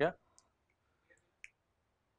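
A short spoken 'yeah', then three faint, spaced clicks of a stylus tapping on a writing tablet as a correction is written.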